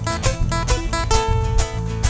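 Band playing an Andean carnaval tune with strummed guitar over a steady, heavy bass beat. About a second in, a long held note comes in over the strumming.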